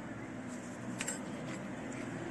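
Steady low background hum, with one short metallic click about a second in from the stainless-steel cuticle pusher.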